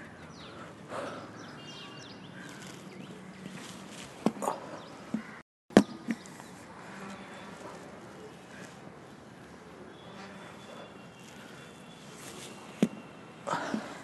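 A few sharp thuds and scuffing footsteps from a medicine-ball throwing drill, over steady outdoor background noise with faint bird chirps. The loudest thud comes just under six seconds in, and another near the end.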